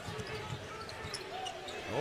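A basketball being dribbled on a hardwood court: short sharp bounces over the steady background noise of an arena.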